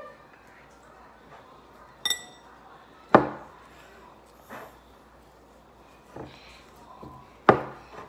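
Glass mixing bowl knocking on a table as slime is kneaded in it by hand, with a few sharp knocks, the loudest about three seconds in and again near the end. A short ringing clink comes about two seconds in.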